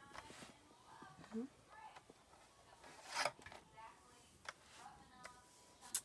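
Sheets of cardstock rustling and sliding as they are shifted into place on a plastic scoring board, in a few short scrapes, the loudest about halfway through.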